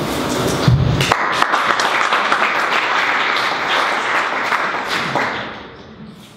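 Audience applauding: a dense patter of clapping starts about a second in and fades out near the end. Before it, a low thud of the handheld microphone being handled.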